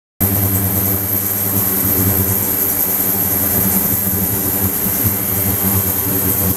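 Ultrasonic tank with a 28 kHz transducer and its degassing and microbubble liquid-circulation pump running: a steady, loud mechanical hum with a thin high whine above it.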